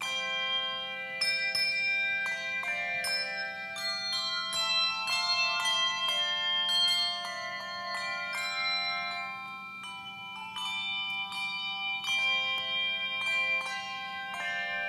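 Handbell choir ringing a piece: struck handbells sounding chords and melody notes that ring on and overlap, beginning suddenly with the first chord.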